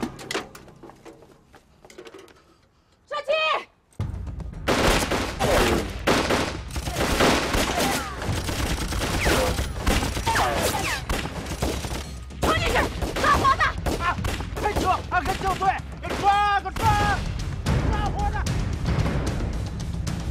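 Gunfire from a film battle scene: after a short cry, a long barrage of rapid rifle and machine-gun shots starts about four seconds in and keeps going. Shouts and a dramatic music score run over it.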